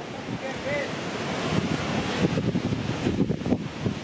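Wind buffeting the microphone in irregular gusts over a steady rushing noise.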